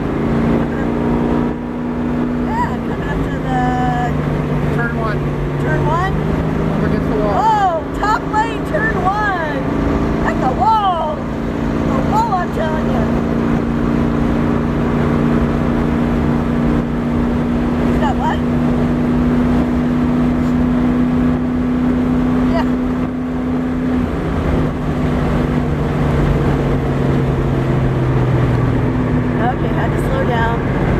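1971 Pontiac Firebird's engine running at steady track speed, heard from inside the car. Its pitch holds through most of the lap, then drops about three-quarters of the way in.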